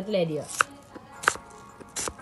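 Kitchen knife chopping an onion on a wooden cutting board: three sharp knocks of the blade on the board, about two-thirds of a second apart.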